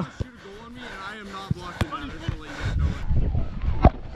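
Voices calling across an outdoor pickup soccer game, with a few sharp knocks. About two-thirds of the way in there is a spell of low rumbling from the action camera being handled.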